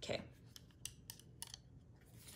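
A few faint, sharp clicks as the parts of a small magnetic diamond-painting tray are handled and taken apart, spread through the second half.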